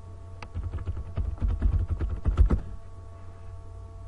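Typing on a computer keyboard: a quick run of keystrokes lasting about two seconds, the loudest keystroke near the end.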